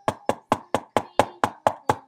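Rapid, evenly spaced knocking on a door, about five knocks a second.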